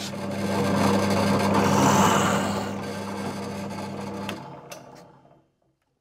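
Drill press running and boring a hole into a wooden block: a steady motor hum under the cutting noise, which is loudest about two seconds in. The hum cuts off about four seconds in and the sound dies away.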